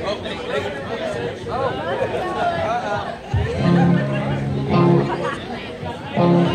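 Voices chattering, then about three seconds in an amplified electric guitar sounds two held low chords, one after the other.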